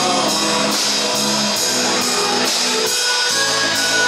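A live rock band playing a 1960s–70s style song: guitars over a steady beat, with no singing in this passage.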